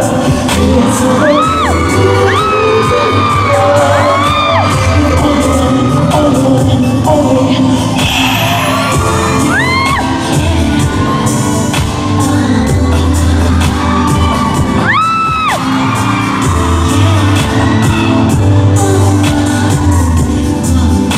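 Live pop concert music played loud through a hall PA, with a heavy driving beat and no lead vocal. Several high-pitched screams from the audience rise and fall over it, one of the loudest about fifteen seconds in.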